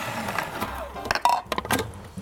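Cuisinart 8-cup food processor's motor spinning the shredding disc through red cabbage, fading away over the first second as it winds down, with a few light plastic clicks near the end.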